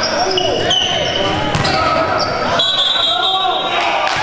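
Basketball game in a gym: the ball bounces on the hardwood floor and players shout, echoing in the hall. Short high squeaks come through, one held for about a second in the second half.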